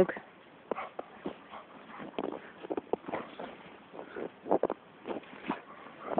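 A Labrador scuffling in snow, making short, irregular crunches and scrapes as it rolls and paws and noses into it.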